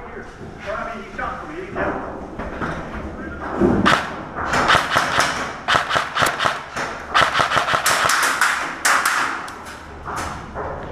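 Airsoft rifle fire: a rapid run of sharp clicks and knocks starting about four seconds in and going on until just before the end, heard from inside a metal shipping container. Voices come before it.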